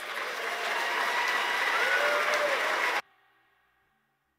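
Audience applauding after a song, with a call or two rising above the clapping, until it cuts off suddenly about three seconds in.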